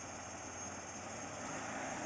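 Ford Explorer's engine running as the SUV creeps forward through mud, a faint steady sound that grows slightly louder.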